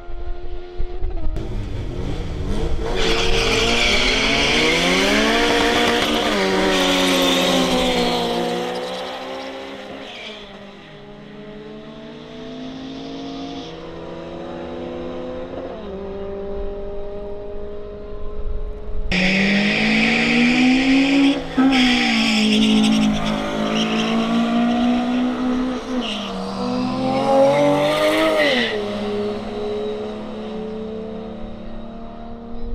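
Drag-racing runs. Two motorcycles launch hard, and their engine pitch climbs and drops with each gear change as they pull away down the strip, then dies away. A second run by cars starts suddenly about 19 seconds in, again climbing through several gear changes.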